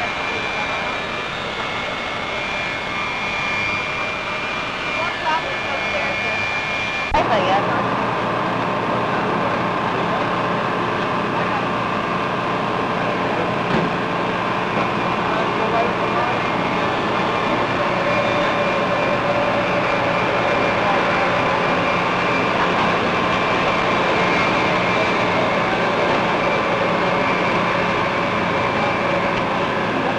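Jet aircraft engines running, a steady whine over a rumble, with indistinct voices. An edit about seven seconds in shifts the whine to a lower pitch.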